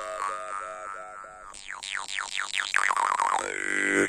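Steel jaw harp (vargan) with a soft reed, tuned to a low G of 49.1 Hz, being played: a steady buzzing drone with mouth-shaped overtones. The overtones first pulse about four times a second, then run in a string of quick falling sweeps, and end on a held high overtone.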